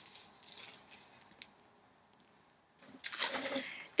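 Plastic baby toys being handled: faint rustles and clicks, a near-silent pause, then, about three seconds in, the plastic rings and beads of a clip-on pram toy rattle as it is picked up.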